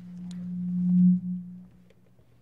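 A single low steady hum from the PA system that swells in loudness for about a second, then cuts off sharply and fades. This is typical of sound-system feedback building up as the microphone changes hands.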